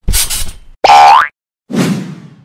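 Cartoon sound effects for an animated logo: a noisy burst, then about a second in a short tone sliding upward in pitch, then a duller, lower noisy sound near the end.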